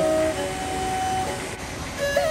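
Steady rushing noise of a river in flood, brown water running high and fast, with a held note of background music over the first part that stops about one and a half seconds in.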